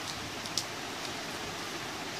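Steady background hiss with one faint click about half a second in, from a sheet of paper being folded and creased by hand.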